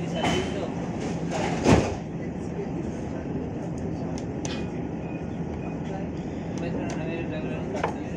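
Steady low hum of a Dubai Tram car's interior while it stands at a stop, with a single sharp knock about two seconds in and faint clicks later on. The tram begins to pull away near the end.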